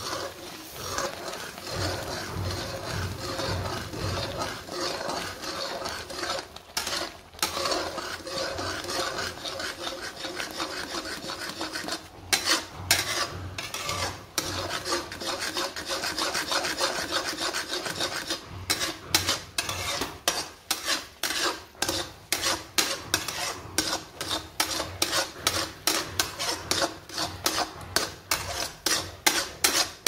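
Metal spatula scraping and stirring semolina halwa in a metal kadai: a continuous rasp at first, then distinct scraping strokes about twice a second through the second half as the halwa thickens.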